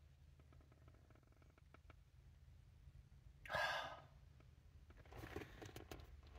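A woman's single breathy sigh about three and a half seconds in, over a quiet low hum, followed by faint rustling of fabric near the end.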